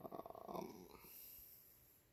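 Only speech: a man's drawn-out "um" in the first second, then faint room tone.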